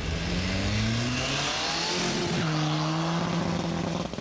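Car engine accelerating, its note rising for about two seconds, then dropping abruptly to a lower steady note.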